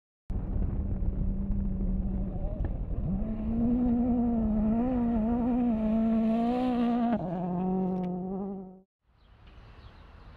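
Race car engine held at high revs, its pitch stepping up about three seconds in and wavering, then dropping back and cutting off suddenly near the end.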